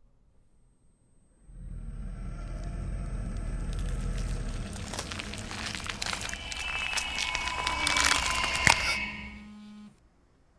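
Horror-film sound design: a low drone enters about one and a half seconds in and swells under a thickening layer of crackling noise and high, held tones. It grows louder to a peak near the end, falls back briefly, then cuts off suddenly.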